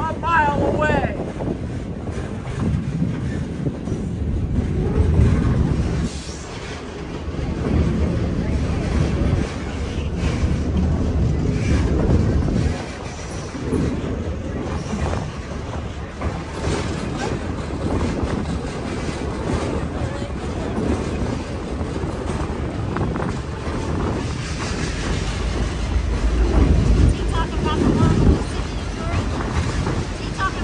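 Passenger train rolling along the track: a steady rumble of wheels on rail that swells and eases, with voices in the background.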